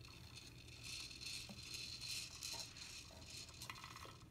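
Faint clicks and rattles of plastic toys on a baby's activity jumper being handled, over a faint steady high hiss.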